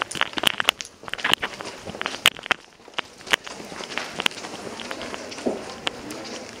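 A string of sharp, irregular clicks and knocks, about a dozen or more, over steady room noise.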